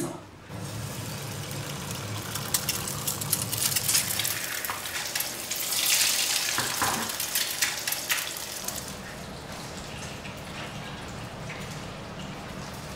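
Food frying in a pan on a gas hob: a steady sizzle with fine crackles of spitting oil, loudest about six seconds in, then settling to a softer sizzle.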